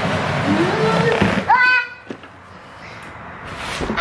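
Loud crackling, rustling handling noise with brief bits of voice; it dies down about two seconds in, leaving a quieter stretch.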